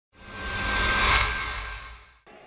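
Short logo sting: a whooshing swell with musical tones and a low rumble, building to a peak about halfway and then fading away.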